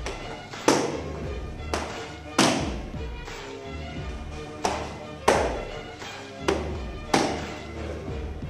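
Kicks smacking into a kickboxing instructor's hand-held kick pads: seven sharp full-contact smacks, several in quick pairs, over steady background music.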